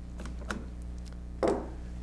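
Small clicks and a light knock about one and a half seconds in, from a Canon FT QL 35mm SLR and its Canon FL 50mm lens being handled as the lens is taken off the camera body.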